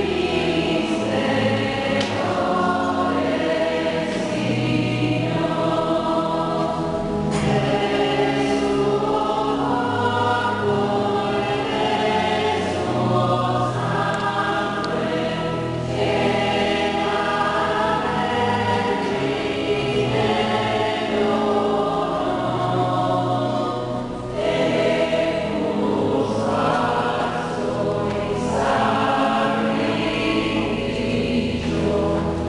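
Church choir singing a communion hymn in slow, held phrases.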